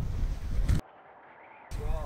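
Wind buffeting the microphone with a low rumble; it drops out abruptly to a much quieter stretch a little under a second in, then comes back just before the end.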